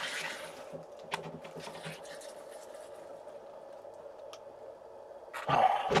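A freshly opened plastic bottle of sparkling water foaming over: a hiss of escaping gas that fades within the first second, then faint fizzing with a couple of small clicks. A loud breathy sound near the end.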